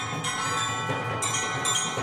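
Percussion ensemble music. Bell-like metal tones ring on, with a few fresh strikes, over a low rumble from the soloist's roto toms.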